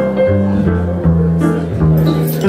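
Live jazz piano and upright bass duo playing: the plucked bass moves through low notes about every half second under the piano.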